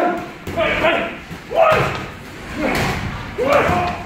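Boxing gloves landing punches during sparring: sharp thuds about once a second, each mixed with short vocal sounds, shouts or grunts, in an echoing gym.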